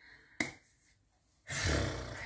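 A single sharp click, then about a second later a breathy exhale with some rumble on the microphone, from a person who has just drunk from a mug.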